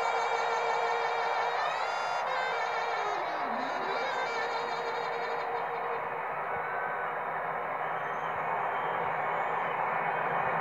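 Stadium crowd cheering and applauding, with a saxophone's last held, wavering note dying away in the first few seconds, heard through a TV broadcast.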